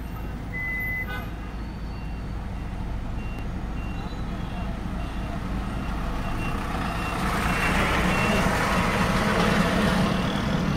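Road traffic heard from inside a car: a steady low engine and road rumble, with a thin high beep repeating evenly a little under twice a second. A broader traffic rush swells up in the last few seconds.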